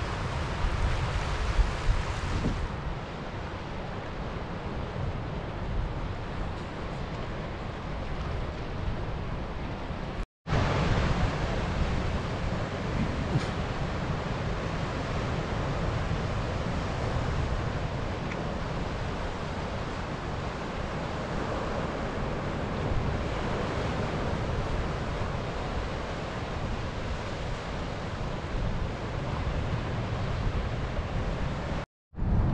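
Sea waves washing and breaking against a shore of black volcanic rock, with wind buffeting the microphone. The sound drops out for a moment about ten seconds in, then carries on.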